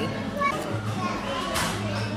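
Busy café background of people talking and chattering, with a brief burst of hiss about three-quarters of the way through.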